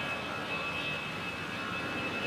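Aircraft engine running: a steady rush of noise with a constant high whine.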